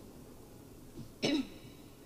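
A person clears their throat once, briefly, just over a second in.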